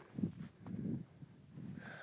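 A trekker breathing hard close to the microphone, several heavy breaths in a row, from exertion in the thin air at around 6,600 m.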